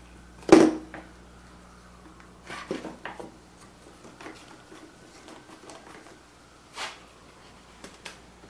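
One-handed bar clamp being fitted across wooden boards: a sharp knock about half a second in as the clamp meets the wood, then a few lighter clicks and clacks as it is slid into place and its trigger squeezed, with one more click near the end.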